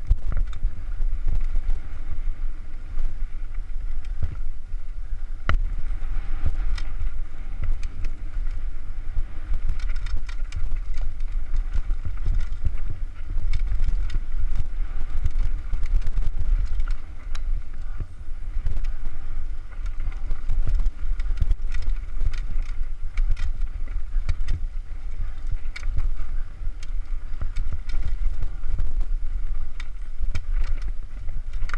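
Mountain bike descending a rough, rocky singletrack, heard from a helmet camera: wind buffets the microphone with a constant low rumble, over which the tyres, chain and frame rattle and knock on the rocks.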